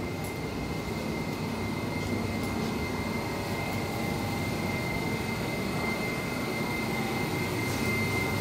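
London Overground electric train standing at an underground platform, its onboard equipment running with a steady hum and a constant high whine.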